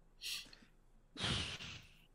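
A man's breathing into a microphone: a short intake of breath, then a longer sigh-like exhale about a second in.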